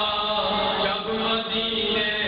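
A man's voice chanting a melodic recitation into a microphone, holding long notes that step and slide in pitch.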